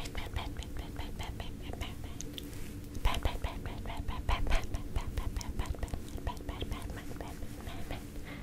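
A soft, fluffy makeup brush patting and brushing against the microphone in quick repeated strokes, about three to four a second, with heavier, thuddier pats from about three seconds in.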